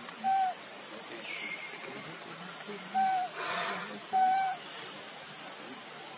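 Baby macaque giving three short, clear coo calls of even pitch: one right at the start and two more about three and four seconds in. A brief rustling hiss falls between the last two calls, over a steady high hiss.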